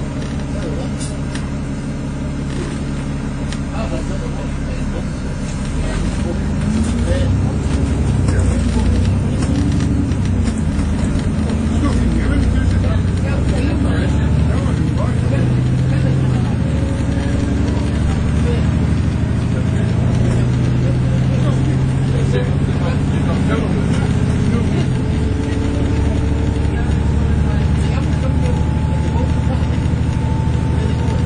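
Alexander Dennis Enviro400 MMC double-decker bus on the move, its diesel engine and drivetrain heard from inside the passenger cabin. The engine gets louder about six seconds in as the bus gathers speed, and in the second half a thin, slowly rising whine from the drivetrain is heard.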